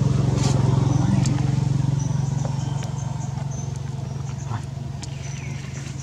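A motor vehicle's engine running nearby, a steady low pulsing hum that slowly fades. Short high chirps sound on top of it now and then.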